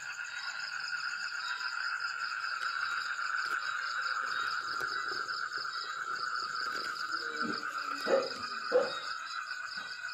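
Steady night chorus of calling frogs and insects, a continuous pulsing trill. Near the end come two short, louder low sounds about a second apart.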